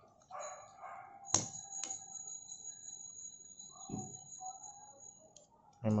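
Plastic clicking as fingers work the stiff locking clip on a car wiper blade's head, with one sharp click just over a second in. A faint, steady high tone runs for about four seconds after the click.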